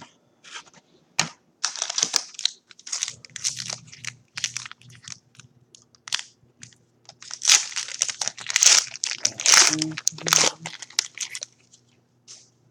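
Foil wrapper of a 2017 Panini Classics football card pack crinkling in the hands and being torn open. There is a run of crackling about two seconds in, and the loudest bursts of crinkling and tearing come in the second half.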